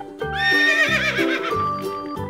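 Horse neighing: one whinny with a quavering, fluttering pitch, lasting about a second, over light background music with a steady beat.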